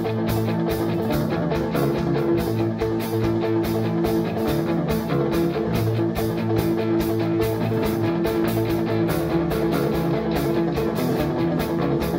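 Rock band playing live, an instrumental passage with no singing: guitar over a steady drum beat.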